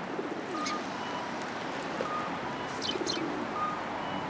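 Eurasian tree sparrows giving short, high, falling chirps, a few times, over the low cooing of a pigeon.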